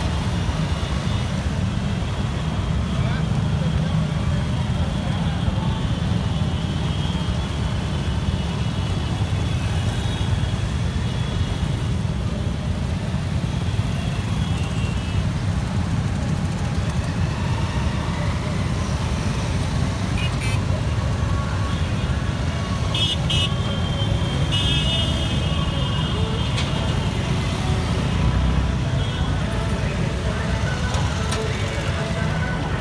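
A procession of many motorcycles and scooters riding past, their engines giving a steady low rumble, with horns tooting now and then.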